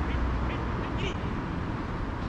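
A few short, high shouts from football players across the pitch, about a second in, over a steady low background rumble.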